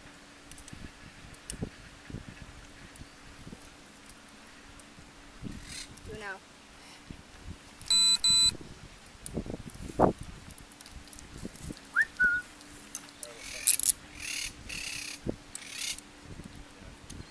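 Two short, loud electronic beeps in quick succession about eight seconds in, over scattered clicks and clothing rustle from close handling. Near the end there is a burst of broken high hiss.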